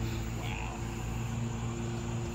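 Steady low mechanical hum, with a faint voice about half a second in.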